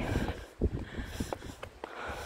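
Strong, gusty wind rumbling on the microphone, with a scattering of light clicks and taps.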